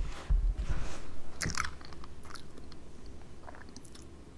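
A few soft low knocks, then a short cluster of small clicks and some fainter ones, from objects being handled on a reading desk close to the microphone, fading into quiet room tone.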